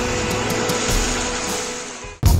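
A Mahindra Thar's engine running as it drives through shallow river water, under background music. The sound fades out near the end.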